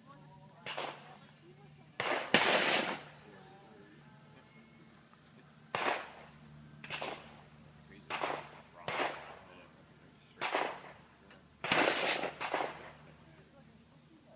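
Gunfire from a shooting range: about a dozen sharp shots at irregular intervals, some coming in quick pairs, each trailing off in a short echo.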